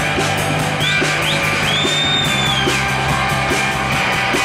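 Live rock band playing: electric guitar and drum kit with an even beat. In the middle a high note slides up, holds for about a second and falls away.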